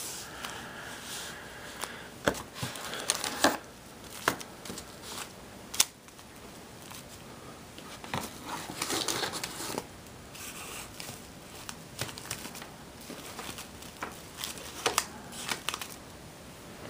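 Wax-paper-wrapped trading card packs crinkling and tapping as they are lifted out of a cardboard display box and stacked on a wooden desk, with scattered sharp clicks.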